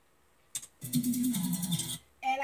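A single click, then a woman's short, rapid, breathy laugh from about a second in.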